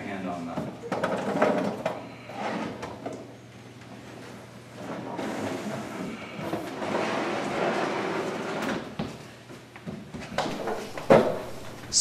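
A large acrylic trickle-filter box sliding and scraping against a wooden cabinet stand as it is pushed into the stand opening, with a longer stretch of scraping in the middle. Low voices come and go.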